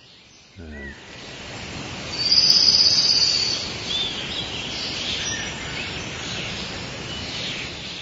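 Bird calls: short high chirps and a loud trill about two to three seconds in, over a steady rushing background noise.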